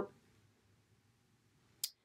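Quiet room tone, then a single short, sharp click near the end.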